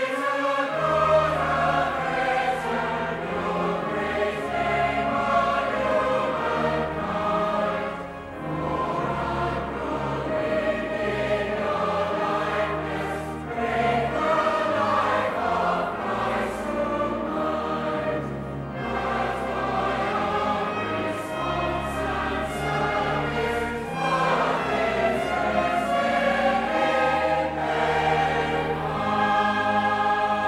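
A large choir and congregation singing a hymn of thanksgiving with instrumental accompaniment, sustained low bass notes under the voices.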